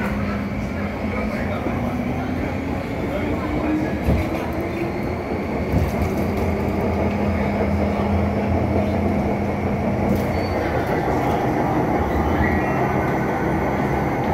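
Onboard running noise of an MTR M-Train carriage in motion: steady rumble of wheels on rail with a low hum, and a faint electric traction whine rising slowly in pitch as the train picks up speed. A couple of short knocks come about four and six seconds in.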